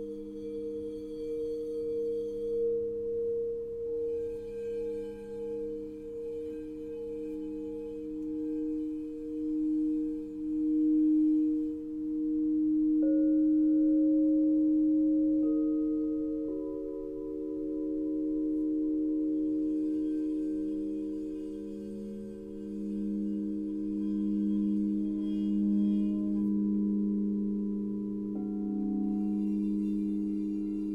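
Alchemy crystal singing bowls tuned to 432 Hz, played with a wand so that several bowls ring together in long, steady, overlapping tones with a slow pulsing beat. Further bowls join in about 13 and 16 seconds in and again near the end, raising the chord.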